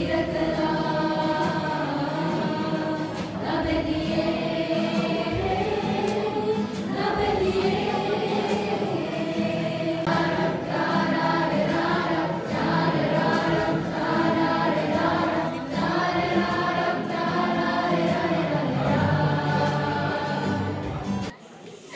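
A group of young people singing a song together as a choir, mostly women's voices, with one singer on a microphone.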